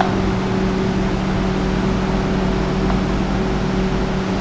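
Steady low mechanical hum with a couple of faint steady tones, the drone of running room machinery such as a fan.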